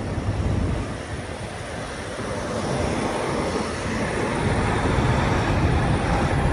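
Heavy diesel truck engines running, a low steady rumble that grows louder over the last couple of seconds.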